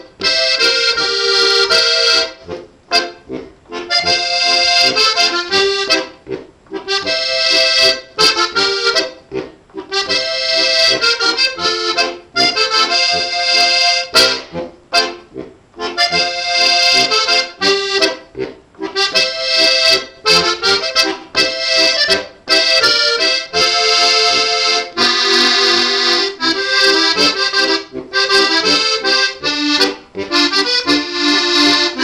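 Steirische Harmonika, a Styrian diatonic button accordion, playing a folk-style tune with melody over chords, in phrases broken by short breaks every few seconds.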